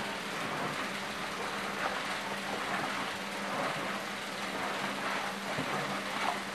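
Long wooden spoon stirring a thick, freshly mixed lye-and-oil soap batter in a plastic bucket: a steady wet swishing, over a constant low hum.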